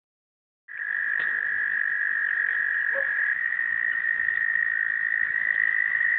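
A breeding chorus of many frogs calling together. It starts abruptly just under a second in and runs on as a continuous high-pitched drone that holds one pitch.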